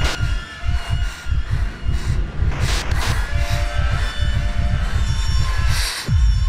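Dark intro sound design: a deep low pulse repeating about four times a second and coming faster in the second half, with short bursts of static-like hiss at the start, around the middle and near the end.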